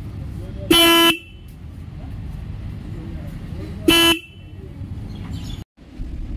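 TVS Ronin 225's single electric disc horn sounding twice in short, steady-pitched beeps, the first about a second in and the second about four seconds in, the second a little shorter.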